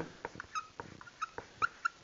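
Dry-erase marker squeaking and tapping on a whiteboard as a word is written: a string of short, high squeaks and clicks, about half a dozen in two seconds.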